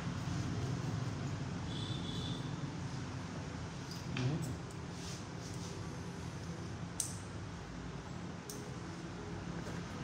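Hair-cutting scissors snipping a few times, sharp short clicks, over a steady low hum of room noise.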